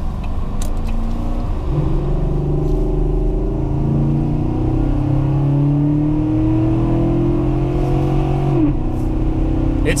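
Chevrolet Silverado 1500's 5.3-litre V8 accelerating, heard from inside the cab, with its intake sound made louder by an aftermarket Cold Air Inductions cold-air intake. The engine note climbs steadily for several seconds, then drops suddenly near the end.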